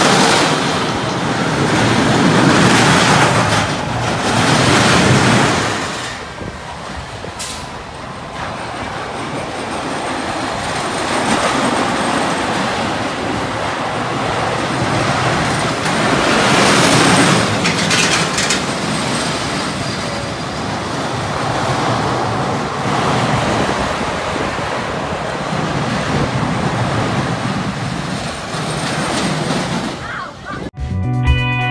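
Pinfari Zyklon steel coaster cars rolling along the steel track, a steady rumble of wheels on rails. The rumble swells loud as the cars pass close in the first few seconds and again about halfway through, with a couple of short clacks.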